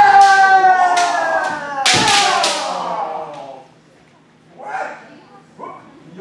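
A kendo player's long held kiai shout, falling slightly in pitch and fading after about three and a half seconds. About two seconds in comes a sharp crack of a bamboo shinai striking armor.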